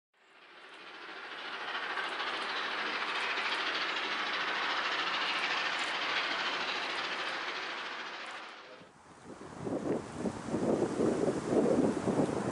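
Victorian Railways R class steam locomotive R711 working along the line, a steady rushing noise that fades in over the first couple of seconds and fades away at about nine seconds. After that, wind buffets the microphone in gusts.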